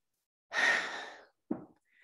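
A woman sighing: one breathy exhale that starts about half a second in and fades away within a second, followed by a brief mouth sound.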